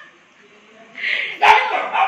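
A pet dog barking a couple of times in the second half, after a quiet start.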